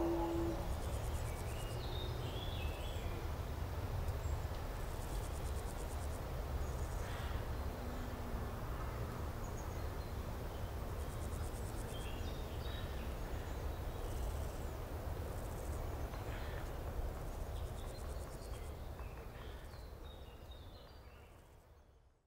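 Outdoor nature ambience: insects trilling in short pulsed bursts high up, with scattered bird chirps over a low rumble, fading out near the end.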